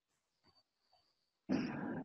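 Near silence, then about one and a half seconds in a short, rough, throaty vocal noise from a man, like a grunt or an 'mm', just before he resumes speaking.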